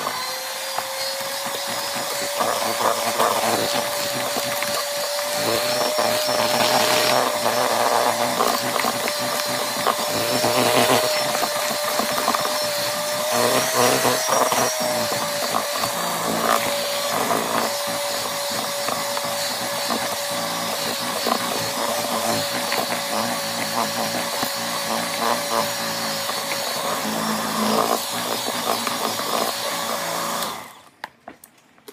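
Electric hand mixer running steadily, its beaters whirring through cake batter in a large plastic bowl with one steady whine.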